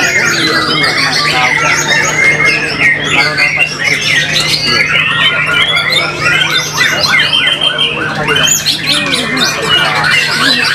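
Caged white-rumped shamas (murai batu) singing, with many fast whistled and harsh phrases overlapping without a break. A steady low hum runs underneath.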